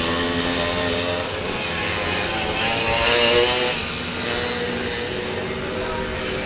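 Off-road racing motorcycle engines revving as they run around a grass track, the pitch rising and falling with the throttle, loudest about three seconds in.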